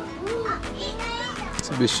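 Children's voices calling and chattering in the background.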